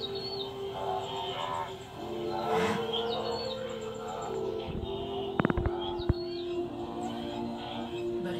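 A TV playing a nature documentary's soundtrack: held, sustained music with short high bird chirps. A quick cluster of sharp clicks comes about five and a half seconds in, and another just after.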